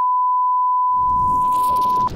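Steady, unbroken test-tone beep at one fixed pitch, the line-up tone played over television colour bars. About halfway through, a low rumble and hiss come in under it.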